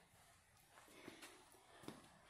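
Near silence: room tone, with a few faint clicks.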